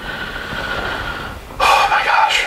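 A person's long, noisy breath with a faint steady whistle running through it, then a louder, sharper breath near the end.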